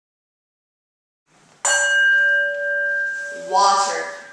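A single bell struck about one and a half seconds in, ringing on with several clear steady tones that slowly fade. It is the cue that opens the next section of the practice.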